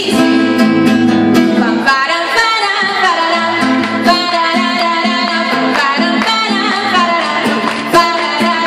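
A woman singing a song while strumming an acoustic guitar, amplified through a stage PA in a live performance.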